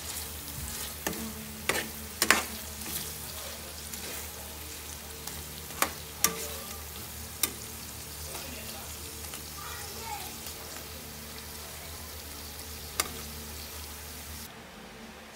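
Shrimp frying in butter and cream sauce in a pan, a steady sizzle, with a spatula scraping and clicking against the pan several times in the first half and once near the end.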